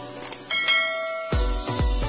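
A bell-like chime sound effect rings out about half a second in, several bright tones that fade within a second, marking the notification bell of a subscribe animation. About 1.3 s in, electronic music with a heavy kick drum starts, just over two beats a second.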